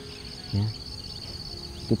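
Insects trilling steadily in a high-pitched, rapidly pulsing chorus.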